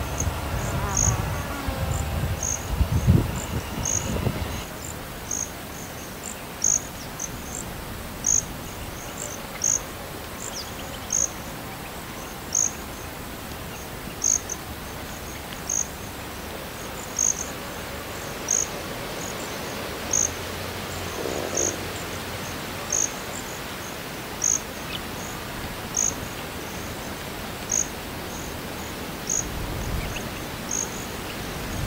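Insects chirping in a steady rhythm, short high chirps with the strongest about every second and a half. For the first four seconds or so a passing train's low rumble sits under them.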